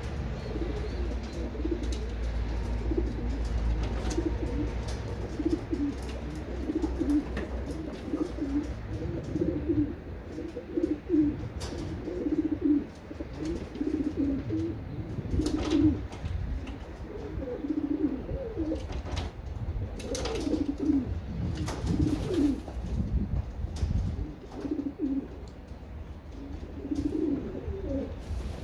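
Racing pigeons cooing again and again, several birds overlapping, with scattered sharp clicks. A low rumble runs underneath and fades out near the end.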